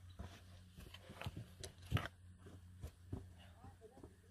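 Faint scattered crunches and taps of boots stepping over rocks, the sharpest about two seconds in, with faint voices behind.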